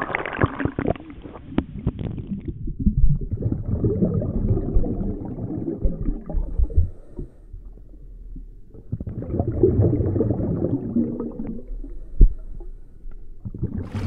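Muffled low rumbling and gurgling of water heard from inside an underwater camera's housing. It swells twice, and there is a sharp knock about twelve seconds in.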